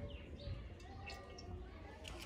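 Faint bird chirps and calls, several short notes scattered through, over a low rumble.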